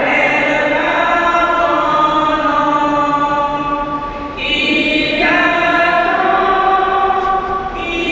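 Voices singing a slow funeral hymn in a church, with long held notes; a new, higher phrase begins about four and a half seconds in.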